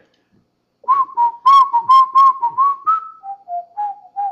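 A man whistling a tune in short, quick notes, starting about a second in. The tune steps down in pitch past the three-second mark.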